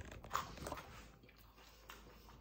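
Soft chewing of a mouthful of cauliflower-crust pizza: a few faint, short crunching bites in the first second, then quieter.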